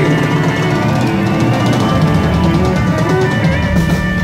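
Live country band playing loudly, drums and cymbals to the fore with guitar, and no singing.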